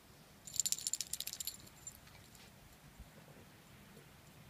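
Metal dog-collar tags jingling in a rapid burst lasting about a second, with a faint jingle a moment later.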